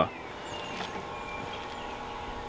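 Dellonda portable compressor fridge freezer starting up just after being switched on: a quiet steady hum that comes in about half a second in.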